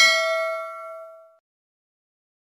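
Notification-bell ding sound effect from an animated subscribe end card: a single bell strike rings on a few steady tones and fades away, gone about a second and a half in.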